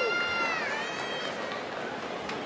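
Audience members whooping for a graduate: long, high-pitched 'woo' calls that slide down and then back up, over the general noise of a large crowd.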